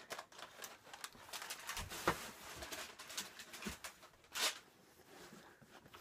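Thin wrapping paper rustling and crinkling as a sneaker is pulled out of it, with a louder rustle about four and a half seconds in.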